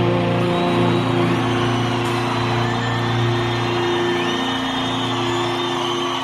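Rock band's final chord held and ringing out on steady sustained notes at the close of the song. An audience cheers and whistles over it.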